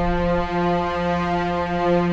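Background music: a sustained held chord, its bass notes shifting about half a second in.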